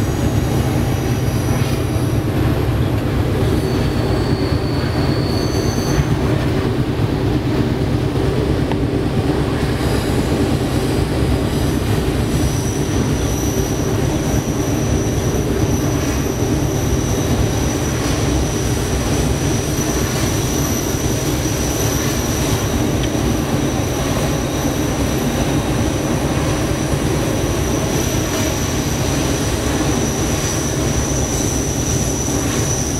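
GE diesel locomotive heard from inside its cab, its engine working under load while climbing a grade, with a deep steady rumble. A steady high squeal joins about twelve seconds in and holds on.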